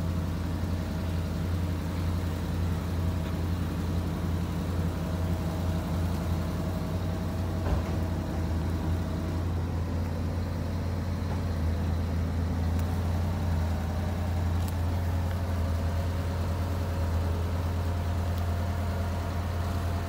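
Heavy diesel engine idling steadily, a low even drone, with a single knock about eight seconds in.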